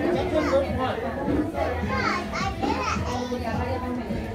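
Many young children's voices babbling and squealing over one another in a large room, with music playing in the background.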